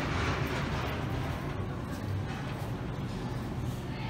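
Steady shop background noise: a low hum under an even hiss, with no distinct events.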